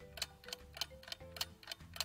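Timer or clock ticking sound effect, an even run of several ticks a second, over a faint music bed.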